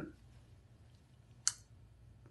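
A pause in a man's speech: quiet room tone, broken about one and a half seconds in by a single short, sharp mouth click.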